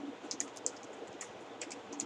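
Keys being pressed by hand: a run of light, irregular clicks over a quiet room hiss.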